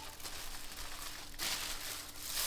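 Tissue paper rustling and crinkling as it is pulled off a pair of ski goggles. The rustle thins out about a second and a half in.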